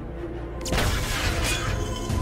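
Action-film sound effects: a sudden crash of shattering glass about three quarters of a second in, ringing on under background music.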